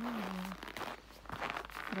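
Footsteps crunching in packed, very cold snow, a few uneven steps.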